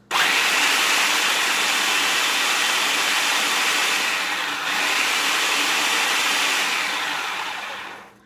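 Food processor motor running, grinding graham crackers into crumbs. It starts abruptly, dips briefly about halfway, and winds down in the last second.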